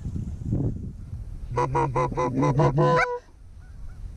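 Goose call blown in a fast run of about eight clucks over a second and a half, ending with a short higher note, calling to Canada geese that are coming in.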